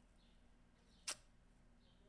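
Near silence: quiet room tone, broken by a single sharp click a little over a second in.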